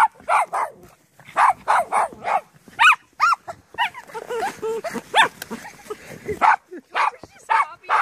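Small papillon dogs barking over and over in short, high-pitched barks, a few a second with brief breaks: excited play barking at a snow shovel.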